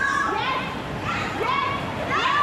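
Several women's high-pitched voices calling out and shouting over one another, with pitch rising and falling.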